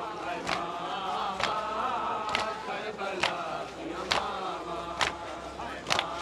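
A crowd of men chanting a noha (Shia lament) together, with sharp hand strikes on their chests (matam) keeping an even beat a little under once a second.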